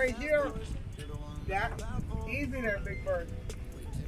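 A man's voice talking over background music, with a steady low rumble underneath.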